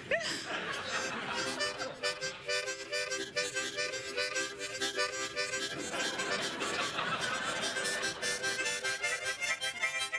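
Two harmonicas played together, sounding loose reedy chords and runs over a quick, steady beat.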